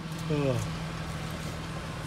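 Jeep Liberty engine running with a steady low hum, and a brief voice sound near the start.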